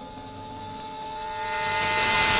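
Film soundtrack music: a sustained held note, with a hissing swell that grows louder near the end.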